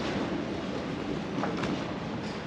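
Strong wind buffeting the camera microphone, a steady rushing rumble, with a couple of brief crackles about one and a half seconds in.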